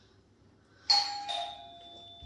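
Doorbell chime: a higher note about a second in, then a lower one, both ringing on and fading.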